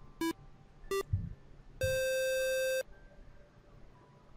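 A short electronic jingle: two quick beeps stepping up in pitch, then one held buzzing note about a second long.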